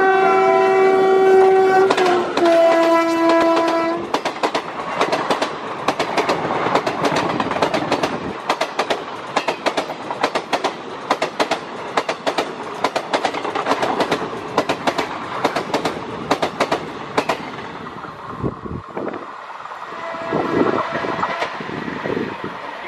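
A WCAM2P electric locomotive sounds its horn for about four seconds as it approaches, the pitch dropping as it passes. Then the coaches of the express run past at speed with a rapid clickety-clack of wheels over the rail joints, fading as the train draws away.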